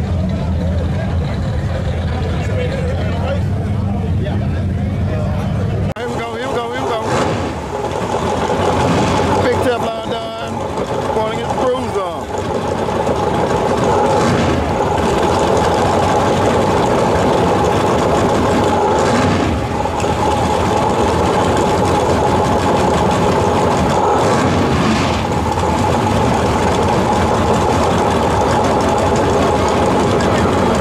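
Crowd noise with drag-race car engines running. After a cut about six seconds in, cars idle at the starting line as a steady loud engine drone under a shouting crowd.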